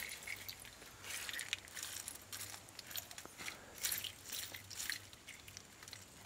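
Pebbles and shell fragments clicking and rattling as a hand picks through wet river gravel in a wire-mesh sifting screen.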